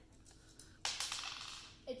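A small die rolling and clattering on a stone countertop for about a second, starting a little under a second in, followed by a child's voice beginning to read the number.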